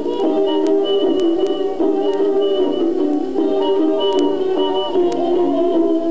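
A 1929 dance band playing an instrumental passage, heard from a 78 rpm Parlophone shellac record, with a few scattered surface clicks.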